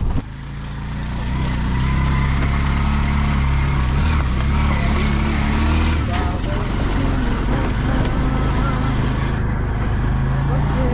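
A motor vehicle's engine running at a steady speed, its low hum growing louder over the first two seconds and then holding.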